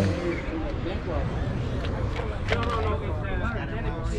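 Background voices of people talking over a low steady rumble, with a couple of brief clicks partway through.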